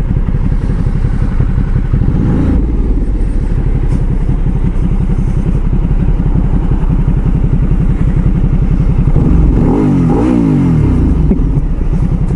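Motorcycle engine idling with a steady, rapid pulse, its note rising briefly about two seconds in and sweeping up and down a couple of times near the end.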